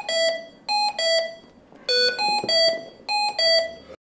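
Hamilton T1 ventilator's high-priority alarm, signalling a condition that needs immediate attention (here a high minute volume). Five beeps of changing pitch sound as three then two, and the sequence repeats.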